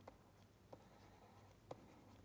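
Faint ticks and light scratching of a stylus writing on a pen tablet, about three small taps against near silence.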